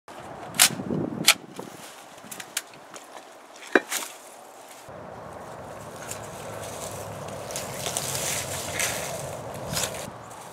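Sharp clicks and twig-like snaps, several in the first four seconds and loudest in the first second and a half, then from about five seconds in a steady crackling and rustling of movement through dry brush, with more small clicks.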